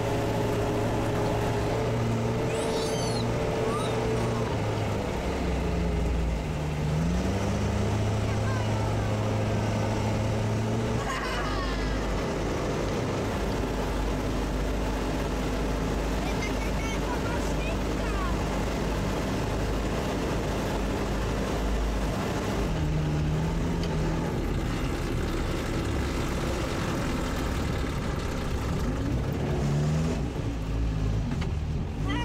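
Sherp all-terrain vehicle's diesel engine heard from inside the cabin while driving, a steady drone whose pitch dips and climbs again about six seconds in and shifts a few more times as the speed changes.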